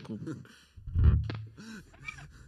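A single low note on an electric bass guitar, plucked about a second in and ringing out briefly under the band's talk and laughter.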